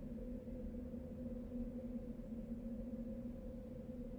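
A steady, low electronic drone: two held tones, one an octave above the other, over a deeper rumble. It is a synthesized ambient sound effect laid over the footage.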